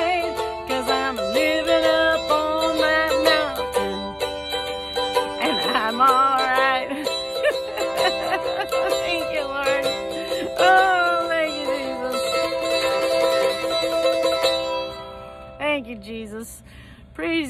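A woman singing with vibrato while strumming a small acoustic string instrument; the voice and strings fade out near the end.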